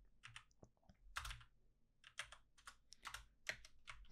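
Faint keystrokes on a computer keyboard, typed in short irregular clusters.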